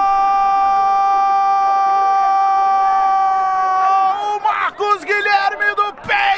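A Brazilian football commentator's long, held goal cry on one steady high note lasting several seconds, breaking off about four seconds in into fast, excited commentary.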